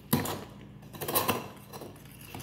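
Clear ice cubes knocking and clinking against each other and a wooden bar top as they are handled: one sharp knock just after the start, then a cluster of clinks about a second in.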